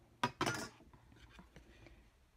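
A light click, then a brief papery rustle of brown cardstock being picked up and handled.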